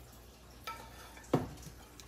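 Dishes being handled on a kitchen countertop: a faint click, then a single short knock about a second and a half in.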